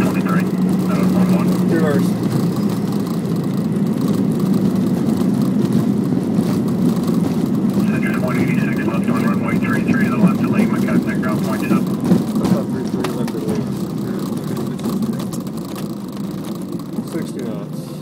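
Boeing 717 cockpit noise on the landing rollout: a heavy, steady rumble and rattle of the jet rolling and braking down the runway, easing off in the second half as it slows.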